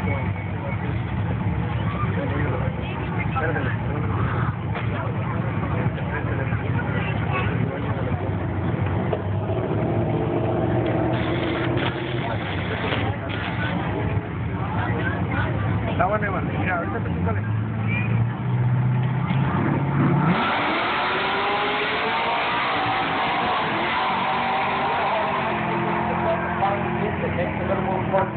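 Chevrolet Colorado SS pickup idling with a low rumble at the drag-strip start line. The engine note rises for a few seconds, then about 20 seconds in it launches at full throttle and accelerates away, pitch climbing as it runs down the strip.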